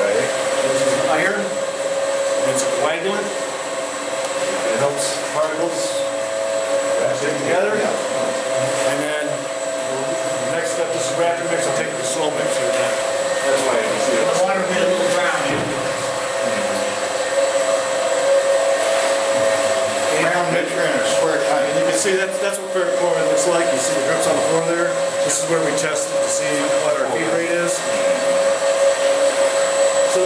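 Steady machinery hum of water-treatment plant equipment, two even tones held throughout, with indistinct voices of people talking over it.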